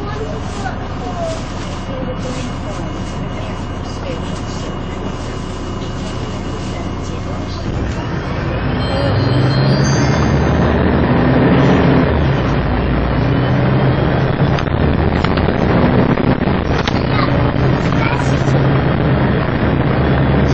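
MAN 18.220LF bus diesel engine running steadily. About eight seconds in it grows louder and works harder, its note shifting as the bus pulls away and accelerates.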